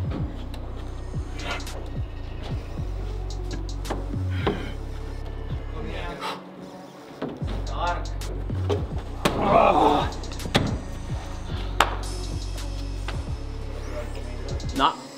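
Background music with a steady bass line and beat. Sharp knocks sound over it, and about ten seconds in there is a brief, loud noisy burst.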